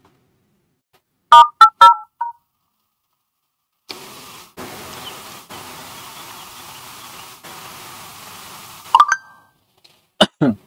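Phone dialer keypad touch tones: about four short beeps in quick succession as a USSD code is keyed in on a Redmi 9. A steady low hiss follows for several seconds while the code runs, and two short beeps come near the end.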